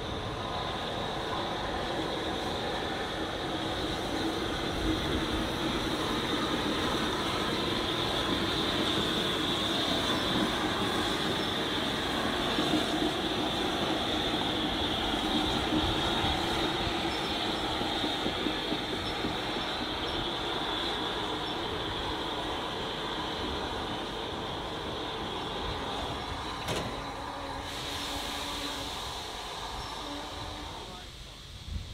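Steam locomotive 34046 'Braunton', a rebuilt Bulleid West Country class Pacific, rolling slowly past with its train, with a rumble of running gear and a steady high squeal. The squeal eases off near the end, just after a single click.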